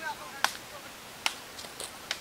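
Three sharp smacks, the first about half a second in and the others a little over a second later, over low outdoor noise; a voice trails off right at the start.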